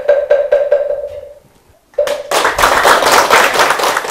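A Buddhist wooden fish (moktak) struck in a quickening roll, each stroke ringing with a hollow tone, fading away over the first second and a half. After a short pause a further strike is followed by a couple of seconds of applause.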